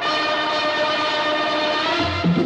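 A loud, horn-like chord of several steady tones, starting abruptly and held unchanged, in the film's opening soundtrack.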